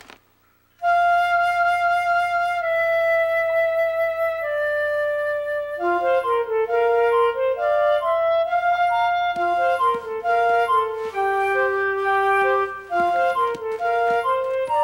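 Background music carried by a flute-like woodwind melody. After a brief silence it opens on one long held note, then moves into a flowing tune of shorter stepping notes that quickens about halfway through.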